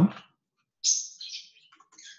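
A single short, high-pitched chirp about a second in, falling slightly and fading over about half a second, followed by a few faint clicks.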